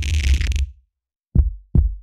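Hand sounds at a microphone, snaps and taps, turned by live electronics into electronic sounds: a hissing burst over a deep throb that stops about two-thirds of a second in, then two deep thumps, each falling in pitch, about 0.4 s apart near the end.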